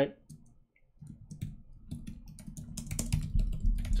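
Typing on a computer keyboard: rapid keystroke clicks starting about a second in and growing louder toward the end.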